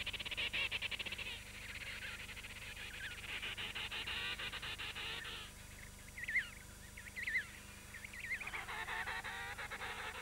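Emperor penguins calling: fast-pulsed, trumpeting calls as a reunited pair call to each other to recognise their mate. A short call at the start, a longer one in the middle, a few brief notes, then another call near the end.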